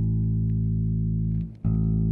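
Open A string of a bass guitar played through a Laney RB3 bass combo amp with the middle EQ rolled completely off: a sustained low note, stopped and plucked again about one and a half seconds in. It has a proper thumping bottom end but zero clarity, so the note itself is hard to hear.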